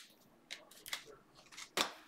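2020 Panini Select football cards being handled: a few short scrapes and clicks as cards are slid off the stack and set down, the last one the loudest.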